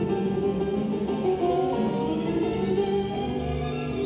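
Instrumental accompaniment music for a rhythmic gymnastics clubs routine, playing without a break over the hall's loudspeakers.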